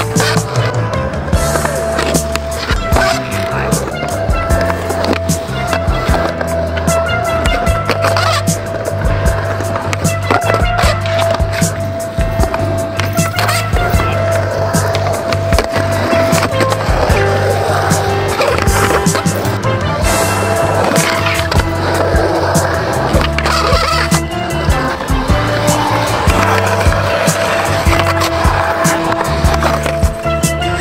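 Music with a stepping bass line and held notes, playing over a skateboard rolling and clacking on concrete ramps.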